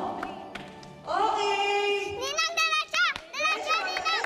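Children shouting and squealing excitedly. About a second in comes one long high cry, followed by rapid, wavering high-pitched squeals.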